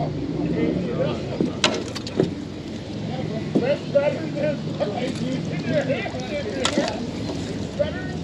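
Wet magnet-fishing rope hauled in hand over hand from a river, water dripping and splashing off it, with a few sharp knocks. A steady low hum runs underneath.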